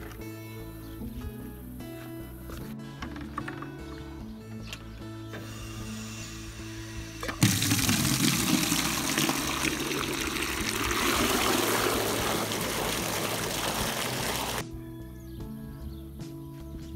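Water from a garden hose pours into a plastic bucket, starting suddenly about halfway through and cutting off shortly before the end. Background music plays throughout.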